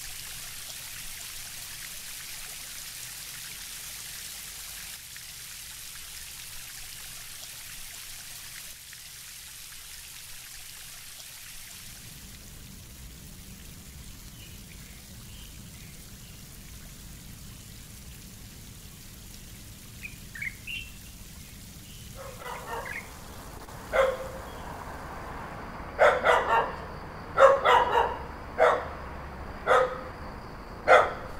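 Rain falling on water and surfaces as a steady hiss. About two-thirds through, a few short bird chirps come in, then a dog barks repeatedly, the barks coming faster and louder near the end.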